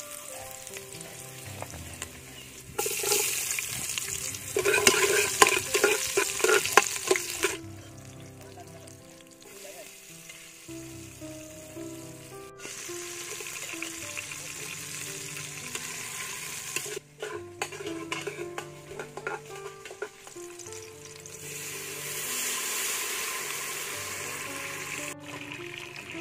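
Garlic, then sliced onions and green chilies sizzling in hot oil in an aluminium pot, with the loudest, crackling burst a few seconds in and quieter steady sizzling later. Background music plays throughout.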